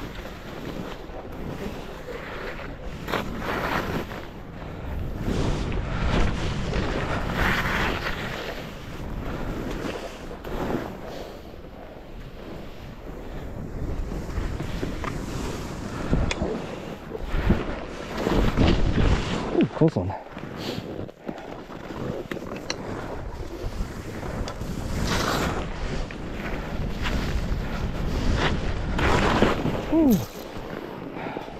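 Skis sliding and turning through snow, a hiss that swells and fades with each turn, with wind rumbling on the microphone.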